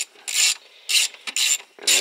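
Ratcheting wrench turning a bolt, heard as four short bursts of clicking with brief gaps between strokes.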